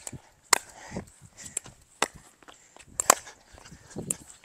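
Pickleball paddles hitting a hard plastic pickleball in a rally: three sharp pops about a second to a second and a half apart, with fainter ticks between them.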